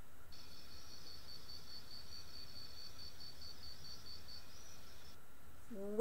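Crickets chirping as a sound effect: a high, even trill of about five chirps a second that stops about a second before the end, over a faint low room hum.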